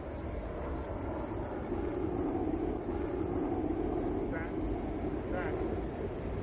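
Low, steady jet roar of a fast-moving craft passing overhead. It builds over the first couple of seconds and eases off near the end, over faint city traffic.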